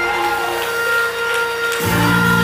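Live gospel church music played by the band: sustained chords held steady, with the bass coming back in strongly near the end.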